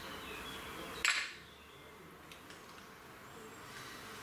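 Faint puffing on a tobacco pipe as a match flame is drawn into the bowl to relight it, then about a second in a short, sharp puff of air, after which it is quieter.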